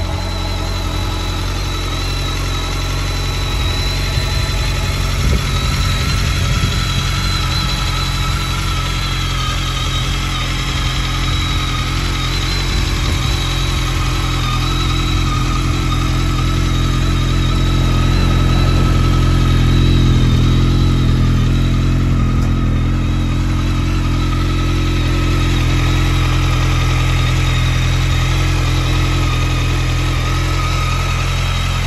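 BMW K1300S inline-four engine idling steadily through an Akrapovic titanium silencer.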